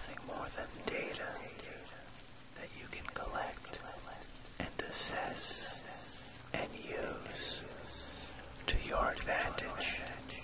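A soft whispered voice speaking in short phrases, over a quiet, steady rain-like hiss and a faint low hum.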